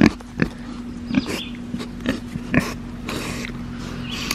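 Pig sniffing and snuffling at close range: a few short breathy sniffs and small clicks, over a steady low hum.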